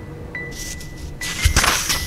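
Pages of a paperback book being turned: two papery swishes, a soft one about half a second in and a louder one near the end, over faint chiming mallet-percussion background music.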